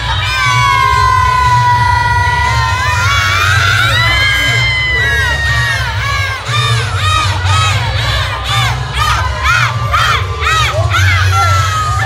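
A group of people whooping and cheering over loud music with a heavy bass: one long drawn-out shout over the first three seconds, then a quick run of short shouts.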